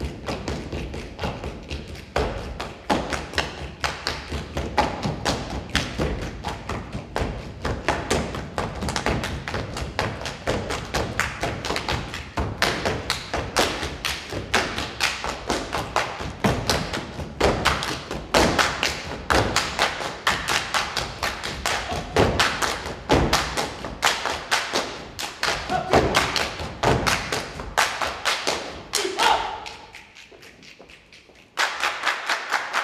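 Folk dancers' feet stamping and tapping in a fast, dense rhythm, with music faintly underneath; the stamping stops just before the end.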